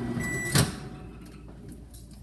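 Microwave oven finishing a short heating cycle: its running hum stops, a single high end-of-cycle beep sounds, and the door is popped open with a sharp clunk about half a second in.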